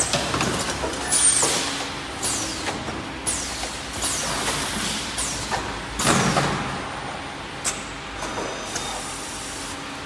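A CNC left-and-right tube bending machine runs through a bending cycle. Pneumatic cylinders hiss and clamps click, with short whines that fall in pitch. The loudest hissing burst comes about six seconds in.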